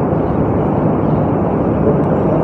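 Steady, fairly loud rumbling background noise, strongest in the low end.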